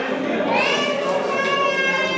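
An infant crying: long, high-pitched wails, with a fresh wail rising in pitch about half a second in.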